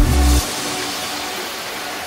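Background music with a beat cuts off about half a second in, leaving the steady rush of a shallow stream running over rocks.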